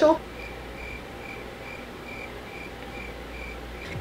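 A cricket chirping steadily, short high chirps about two a second, over faint room hiss.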